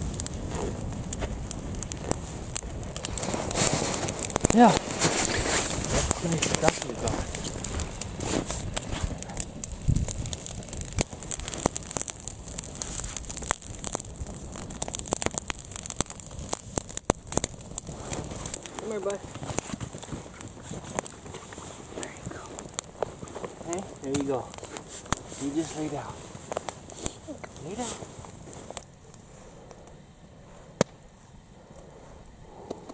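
Wood campfire burning, crackling with frequent sharp pops and snaps.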